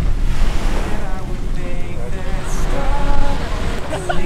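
Wind buffeting the microphone over the steady wash of surf, with faint voices in the background.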